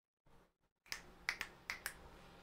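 Five short, sharp clicks starting about a second in, some in quick pairs.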